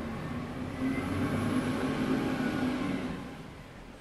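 Garbage truck passing, a steady engine drone that fades away near the end.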